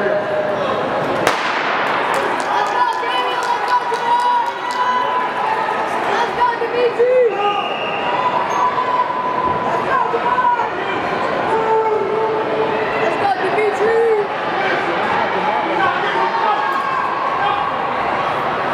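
A starter's pistol shot about a second in, then spectators in an indoor track arena yelling and cheering, with many long held shouts.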